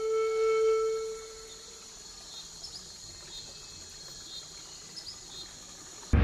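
Documentary background music ends on a held note that fades out in the first second and a half. A faint ambience follows, with a few short high chirps.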